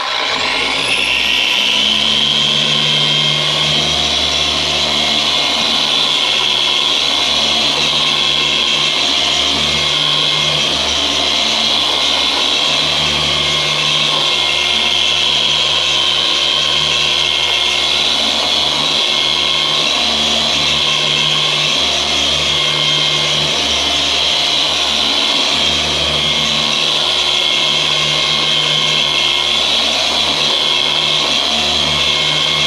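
Corded Rupes Bigfoot Duetto 12 mm-throw dual-action sander starting up with a rising whine, then running steadily. It is mist-sanding clear coat with a foam-backed 2000-grit pad on a water-misted panel, taking out 1500-grit scratches.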